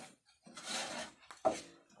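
Garri (grated cassava) being stirred and scraped across a wide frying pan: a gritty rasping sweep, then a short knock near the end.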